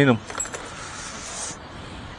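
A brief, light jingle of keys lasting about a second, over faint steady street background.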